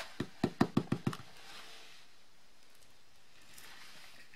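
Clear acrylic stamping block knocking lightly against the paper and work surface. About seven quick taps come in the first second, then only faint room hiss.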